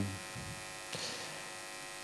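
Steady electrical mains hum and buzz from the lecture's microphone and sound system, with the tail of a spoken word fading at the very start and a faint short hiss about a second in.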